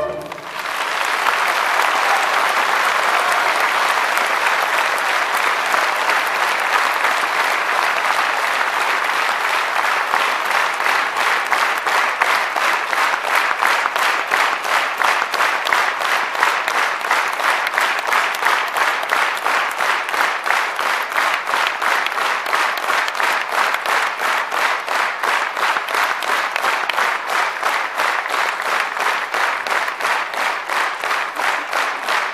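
Large audience applauding right after a song ends. After about ten seconds the applause settles into rhythmic clapping in unison, a steady beat that runs on.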